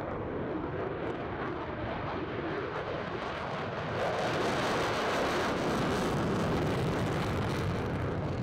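F-35 fighter jet taking off at full power, its engine a steady rushing jet noise that gets louder and brighter about halfway through as it lifts off and climbs away on afterburner.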